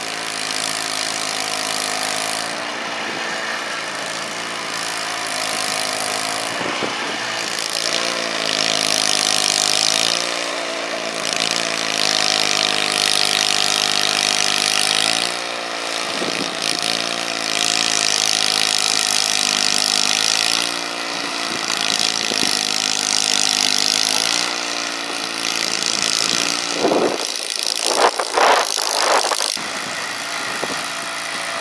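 Two-stage gas snowblower engine running steadily while clearing a sidewalk, its pitch dipping and recovering several times, with a hiss over it. Near the end there are a few louder, uneven surges.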